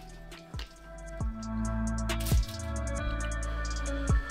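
Chill background music over wet, squishy sounds of a French tacos loaded with cheese sauce being eaten, with a few short drips of sauce.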